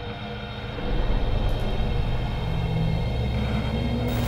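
Cinematic intro sound design: a deep, steady rumble under held droning tones, stepping up in loudness about a second in.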